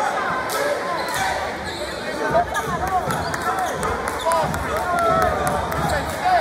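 Indoor gym game noise: voices and shouts from the crowd and bench, with a basketball bouncing on the hardwood court in sharp, scattered knocks.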